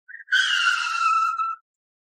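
A woman's high scream lasting just over a second, falling slightly in pitch, as a car comes at her.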